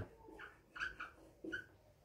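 Marker squeaking on a whiteboard as a word is written: four short, faint squeaks in the first second and a half.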